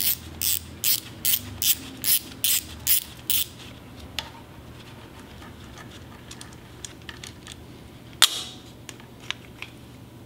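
Ratchet wrench clicking in quick even strokes, about two and a half a second, as it backs out the cam sensor bolt on a HISUN V-twin UTV engine; the clicking stops about three and a half seconds in. Light handling clicks follow, and a single sharp metallic clack comes about eight seconds in.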